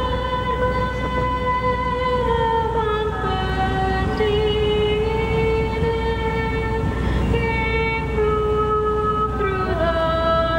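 Slow music: a single melody of long held notes, moving from one pitch to the next every second or two, over a steady low background rumble.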